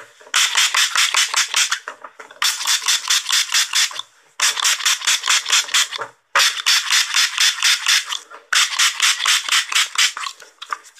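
Trigger spray bottle being squeezed very fast, each pull giving a short hissing spray, about six sprays a second. The sprays come in five runs of about one and a half seconds with brief pauses between. They are picked up close on an earphone microphone.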